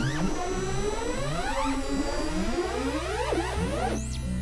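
Dense layered electronic sound: many overlapping tones sweeping upward in curves and dropping back abruptly, again and again, over a low steady drone.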